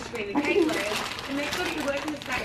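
Quiet, indistinct talking in a small room, softer than the conversation just before and after.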